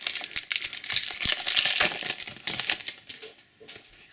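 Foil wrapper of a trading-card booster pack crinkling and crackling as it is torn open in the hands, a dense crackle for about three seconds. Near the end it dies down to a few soft clicks as the cards are drawn out.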